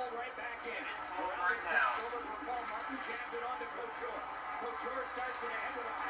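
Televised ice hockey game playing in the room: faint play-by-play commentary over the broadcast's background sound.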